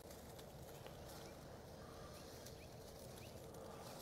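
Near silence: faint, steady outdoor background with no clear event.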